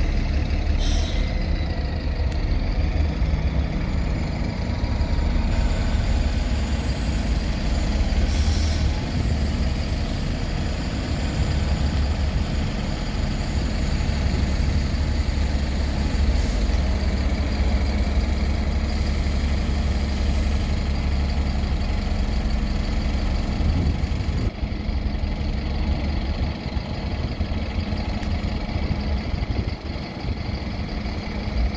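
Diesel engines of Alexander Dennis Enviro200 single-deck buses running as they manoeuvre and pull across a bus station, a steady low rumble throughout. Several short air-brake hisses break in: about a second in, a louder one around nine seconds, another around sixteen seconds and a weaker, longer one around twenty seconds.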